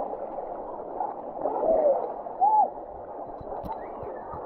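Creek water rushing and splashing over the camera on a rock waterslide, heard muffled, with a short pitched sound about two and a half seconds in.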